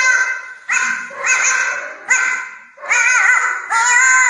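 A small dog giving a run of about six drawn-out, wavering yelping howls in quick succession, each lasting around half a second to a second with short breaks between them.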